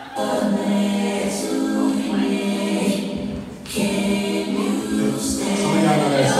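Singing through a PA: long held vocal notes, broken by a short pause about three and a half seconds in.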